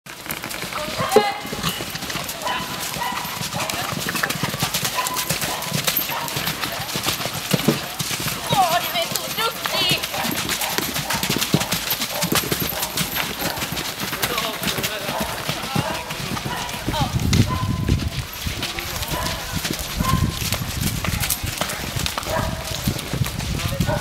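A horse's hoofbeats on the sand footing of a riding arena as it canters under a rider, with people talking in the background.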